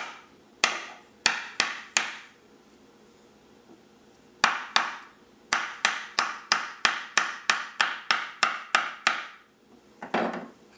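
Ramming rod knocked repeatedly down inside a PVC rocket motor casing, forcing a tight-fitting propellant grain segment into place. Sharp, briefly ringing knocks: four, a pause of about two seconds, then a steady run of about fourteen at roughly three a second.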